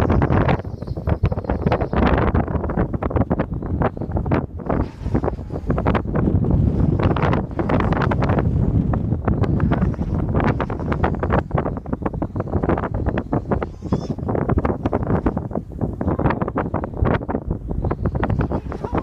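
Strong wind buffeting the microphone: a loud, rough rumble with constant uneven gusts.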